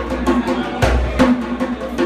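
Djembe played by hand in a steady rhythm: sharp slaps and tones, with a deep bass stroke about a second in.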